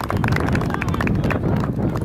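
Wind buffeting the camera microphone, a heavy low rumble, with a rapid irregular run of clicks and knocks like handling noise on the camera.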